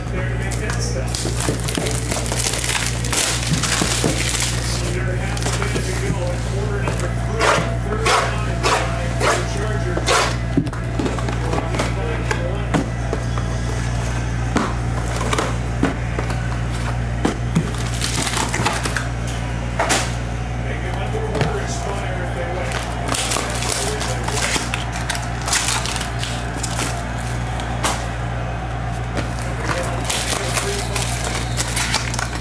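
A cardboard card box being opened and its foil-wrapped packs handled: many short, sharp crinkles and taps. Steady background music plays underneath.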